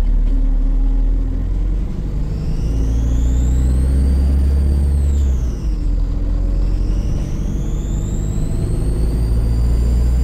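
Volvo B5LH hybrid bus's four-cylinder diesel engine running under load beneath the passengers, with a deep steady rumble. Over it a loud high-pitched turbo whistle rises, dips briefly in the middle and rises again: the sound of a turbo leak.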